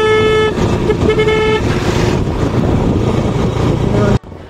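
A vehicle horn honking, one blast that stops about half a second in and a second short blast about a second in, followed by steady wind and road noise from a moving motorcycle.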